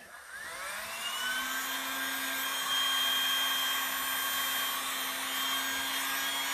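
Handheld electric heat gun switched on, its motor spinning up with a rising whine over the first second or so, then running steadily with a rush of air.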